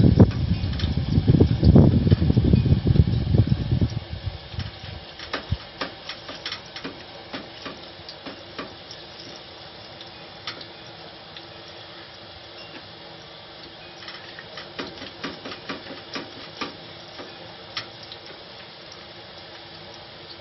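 Banana slices frying in a wok of hot oil: a steady sizzle, with scattered sharp clicks and scrapes from the slicer as fresh slices are shaved straight into the oil. A loud low rumble covers the first four seconds.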